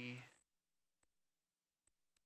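The end of a spoken word in the first moment, then near silence broken by two faint, sharp clicks, one about a second in and one near the end.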